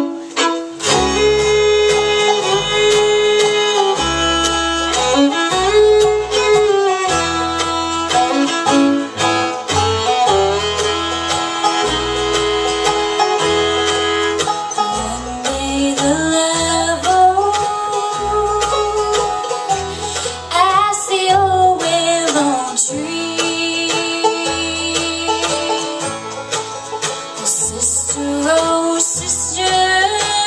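A live bluegrass band plays at a steady beat, with a fiddle carrying a sliding melody over banjo, acoustic guitar and mandolin, and alternating bass notes underneath.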